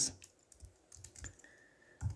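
A few faint, scattered computer keyboard keystrokes.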